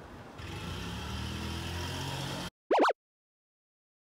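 A car driving past on the street, its engine hum rising slightly, cut off abruptly; then a brief, loud edited sound effect of quick up-and-down gliding tones.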